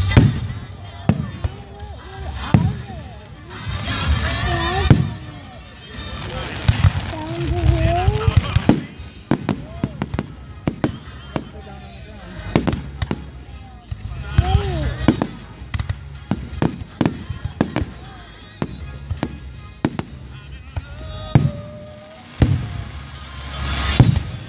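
Aerial fireworks bursting: dozens of sharp bangs at irregular intervals, often several a second.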